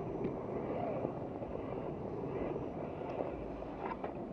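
Axial Wraith RC rock crawler's small electric motor and drivetrain whirring as it crawls over rocks. A faint high whine stops about two-thirds of the way in, and there are a couple of sharp clicks of tyres or chassis on rock.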